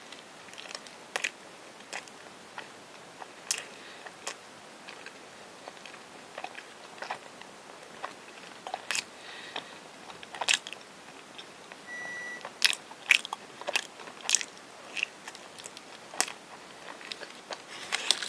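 Close-miked chewing of soft, sticky rice-cake bread filled with cream, with wet mouth clicks and smacks at irregular intervals.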